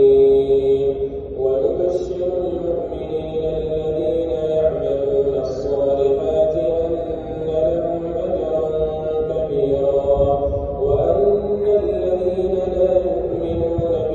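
A man's voice chanting in Arabic at a mosque, in long held, ornamented melodic phrases with short breaks between them.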